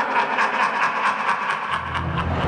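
A man's cackling laugh in quick, even pulses, with a low rumble coming in near the end.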